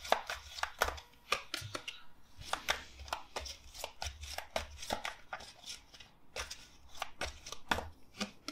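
A tarot deck being shuffled overhand by hand: an irregular run of short, light card clicks, about three a second.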